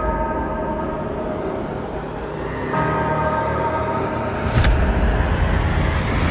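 Propeller race plane's engine droning at full power inside a road tunnel: a steady buzz with several held tones over a low rumble. It grows louder about three seconds in, and a brief rushing whoosh passes about four and a half seconds in.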